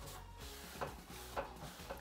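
Quiet background music, with a few faint rubs of a cloth wiping down a painted steel panel radiator.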